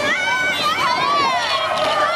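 A group of young girls shouting and cheering all at once, many high voices overlapping, with a steady tone underneath.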